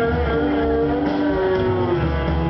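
Live blues-rock band playing through a festival sound system: sustained electric guitar notes over a steady bass, one held note bending down in pitch near the end.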